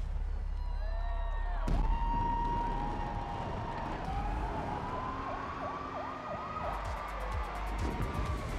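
City sirens wailing and yelping over a low, steady drone of trailer score, with a sharp crack about two seconds in and a cluster of quick pops near the end.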